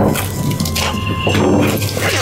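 A fist banging on a wooden interior door, several blows in quick, uneven succession.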